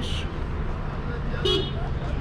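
Bus-station traffic: vehicles running with a steady low rumble, a brief hiss at the start, and a short vehicle horn toot about one and a half seconds in.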